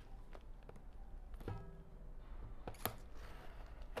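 Scissors cutting the packing tape on a cardboard box: a few scattered sharp snips and taps, the sharpest a little before three seconds in. A short faint tone sounds about a second and a half in.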